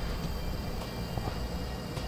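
Small handheld gas torch burning with a steady hiss, heating a crimped ring terminal on a 6-gauge cable to melt solder into the joint.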